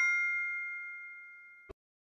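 Ringing tail of a bell-like ding sound effect from an animated subscribe button, a few clear tones fading away steadily. A short click comes about one and a half seconds in, and the ringing cuts off with it.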